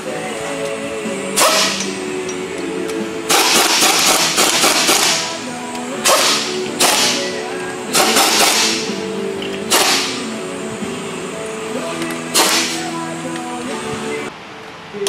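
A handheld power ratchet spinning exhaust manifold bolts into an engine's cylinder head in about seven short bursts, one of them nearly two seconds long, over background music.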